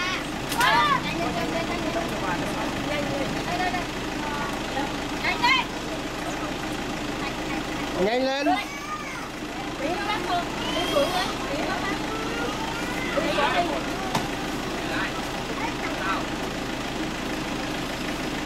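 Several people's voices talking and calling out in overlapping snatches, over the steady low hum of a Toyota Hiace minivan's engine idling.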